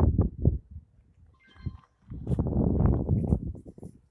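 Thumps and a low rumbling rush of noise on the microphone while walking with a GNSS survey pole, with a faint short tone about one and a half seconds in.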